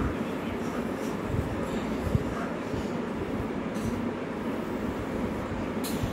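Steady low rumbling background noise, with faint scratches of a pencil sketching on paper.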